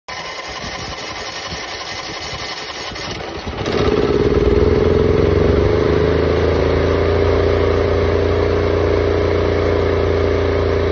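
Catering van's built-in generator starting up about three and a half seconds in, its pitch dipping slightly before it settles into a steady run.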